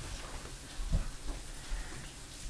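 Salt shaken from a small shaker, pattering faintly onto split trout on cardboard, with a soft knock about a second in.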